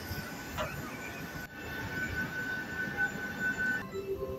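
Jet airliner noise on an airport apron: a steady low rumble, with a steady high-pitched whine coming in about a third of the way through and cutting off just before the end.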